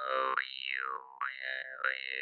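Glazyrin Compass vargan (Russian jaw harp) played: a high overtone glides down and up over a steady low drone, with a short dip in level about a second in before the next pluck.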